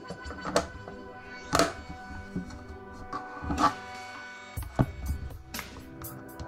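Background music with about four sharp plastic clicks and knocks as the Air 6 Plus desktop air purifier's filter base is handled and fitted back on.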